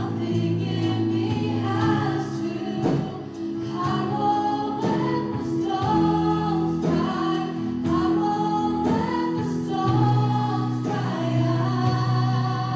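Live church worship band: a group of male and female voices singing together over acoustic guitar, keyboard and drums, with a steady beat.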